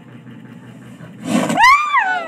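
A sudden burst of noise a little past a second in, then a high-pitched scream of fright that rises and then falls over about a second.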